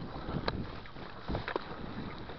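Mountain bike rolling fast down a dirt forest trail: wind rushing over the microphone and tyre noise, with a few sharp knocks and rattles from the bike over bumps, about half a second in and again around a second and a half.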